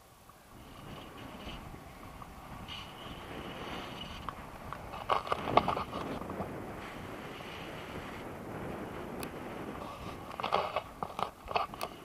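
Airflow rushing over the camera's microphone during a tandem paraglider flight. Bursts of crackling buffeting come about five seconds in and again near the end.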